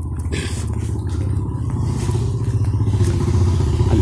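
A vehicle engine running with a low, pulsing rumble that grows steadily louder, as if drawing closer.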